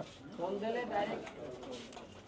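A faint, low human voice murmuring or humming, with a few short rises and falls in pitch, well below the level of normal talk.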